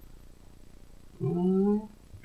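Quiet room tone, then about a second in a single short vocal sound that rises in pitch and lasts just over half a second.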